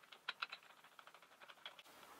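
Faint, quick metallic clicks and rattles of a small carving cutter being handled and fitted onto an angle grinder's spindle, with the grinder switched off.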